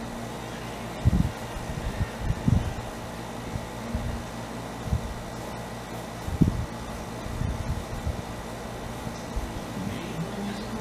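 A radio playing '50s rock and roll oldies faintly under a steady background hiss, with a few soft low thumps.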